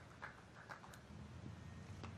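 Near silence: faint open-air ground ambience at a cricket match, with a few faint short ticks in the first second.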